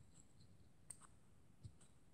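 Near silence with two faint clicks, about a second in and again a little later: a plastic miniature's base being set down and handled on a gaming mat.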